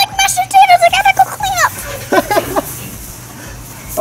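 A young girl's high-pitched squeal, held and wavering for about a second and a half and ending in a falling glide, followed by a few shorter yelps.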